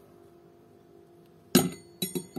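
The metal head of an immersion blender clinks once against a glass jar of oil and egg as it is lowered in, about one and a half seconds in, with a short high ringing after it.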